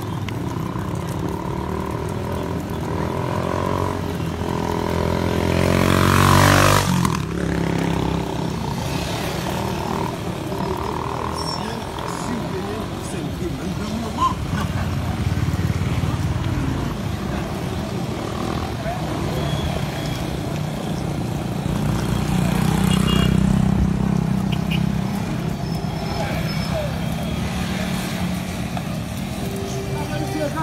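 Street noise with people's voices, and a motor vehicle passing close by, loudest about six and a half seconds in. Another engine grows louder and fades again around the twenty-three-second mark.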